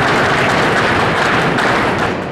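A group of children in riding boots stamping their feet fast on a hard hall floor, gaúcho sapateado style: a dense, continuous clatter of stamps.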